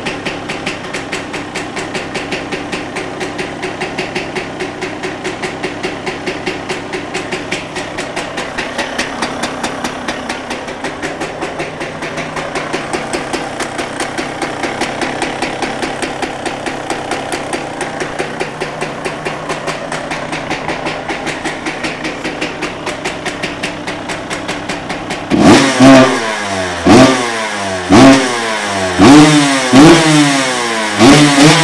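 The exhaust of a 2001 Honda CR125R's 125 cc single-cylinder two-stroke engine idling with a steady pulsing, cold-started and running rich. About 25 seconds in it is revved hard in about five sharp blips that rise and fall in pitch, so loud that the recording distorts.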